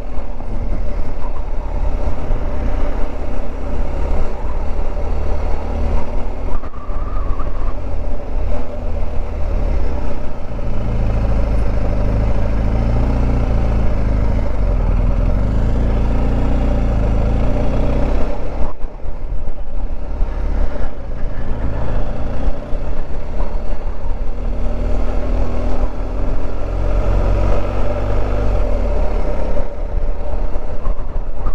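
BMW R1250 GS boxer-twin engine running at low town speed, heard from on the bike along with road noise. The sound dips sharply for a moment about two-thirds through, and the revs rise near the end as the bike picks up speed.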